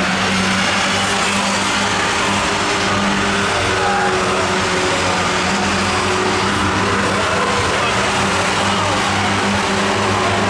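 A pack of Ministox racing cars, Mini-based stock cars, running hard around the oval together. Their engines make one steady, loud mix of engine noise.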